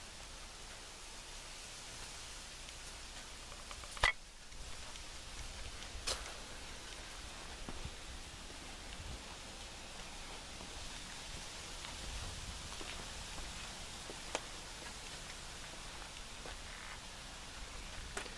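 Quiet background hiss with no engine running, broken by a sharp click about four seconds in and fainter clicks about six and fourteen seconds in.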